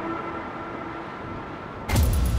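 Intro sound design: the held tone of an earlier music hit fades out over a low rumbling noise. Near the end a sudden loud hit opens the channel's logo sting.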